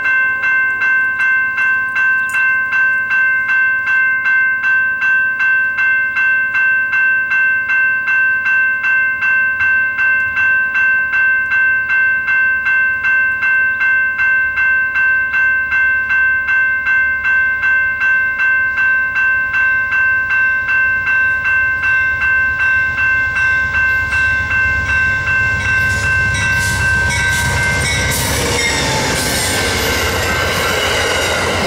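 Railroad crossing bell ringing steadily, about two strikes a second. In the last few seconds an Amtrak passenger train's rumble rises as it reaches and passes through the crossing, drowning out the bell.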